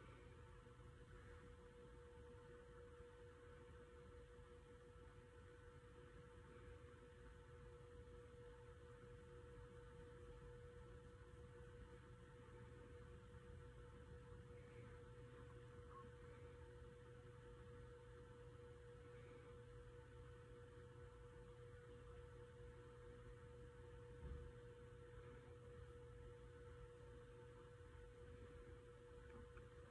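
Near silence: room tone with a faint, steady hum.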